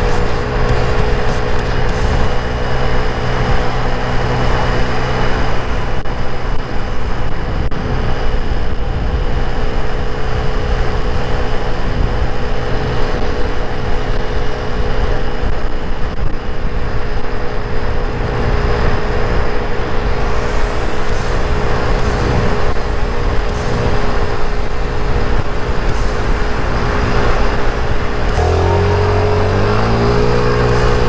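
Mondial Wing 50cc scooter engine droning at a steady cruising pitch, under heavy wind and road noise. Near the end the engine note drops and then picks up again as the scooter slows and pulls away at an intersection.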